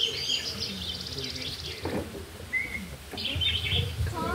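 Small birds chirping in quick high-pitched trills, one run at the start and another about three seconds in, with a single short note between them.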